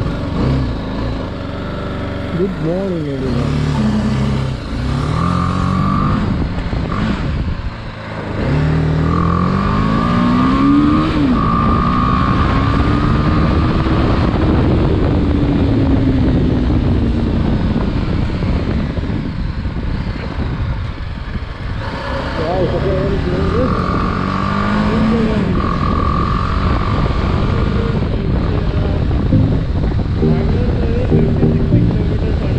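Motorcycle engine heard from the rider's seat, pulling through the gears: its pitch climbs, drops back at each gear change and climbs again, then rises and falls slowly with road speed. A rumbling rush of air on the microphone runs beneath it.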